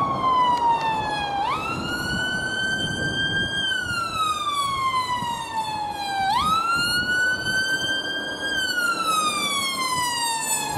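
Ambulance siren in a slow wail: twice it jumps quickly up in pitch, then glides slowly back down, about five seconds to a cycle, over a steady background rush.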